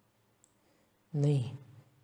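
Near silence broken by one faint, brief click about half a second in, followed about a second in by a short spoken syllable.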